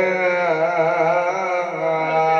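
A man's voice in melodic chanted recitation, holding one long note that wavers slowly in pitch, amplified through a microphone.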